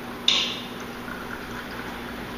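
Beer poured from a glass bottle into a half-full stemmed glass to raise a head: a short sharp burst about a quarter second in, then a steady pouring hiss.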